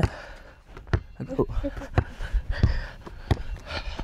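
Sharp thumps about once a second, coming a little quicker near the end, from a basketball bouncing and a player's feet on concrete. Close breathing is picked up on a clip-on lavalier mic.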